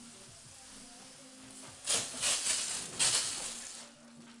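Hose spray nozzle hissing as it mists water onto a cob wall, in two louder stretches from about halfway through.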